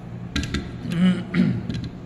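A light metallic click about half a second in as the piston spring and op rod go into the rifle's upper receiver, then a man clearing his throat in two rough bursts.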